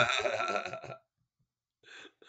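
A man chuckling, a short run of laughter that dies away about a second in.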